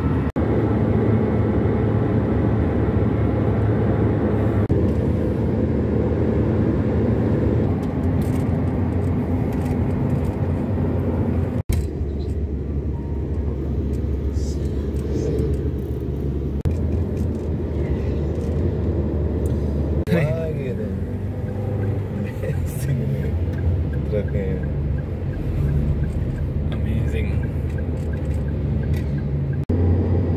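Steady low rumble of a car's engine and tyres on the road, heard from inside the moving car, with a brief dropout about twelve seconds in.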